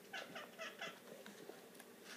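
Four short vocal calls in quick succession within the first second, then faint soft ticks.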